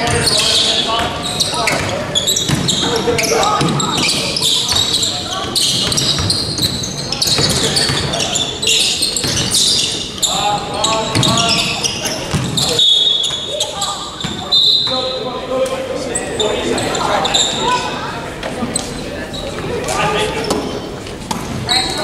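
Basketball game in a gym: a ball bouncing on the hardwood court amid players' and coaches' indistinct shouts, with the echo of a large hall.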